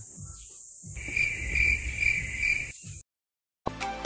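A high, pulsing chirp-like call, four pulses over about a second and a half, over faint low background noise. It stops, and music with a beat starts just before the end.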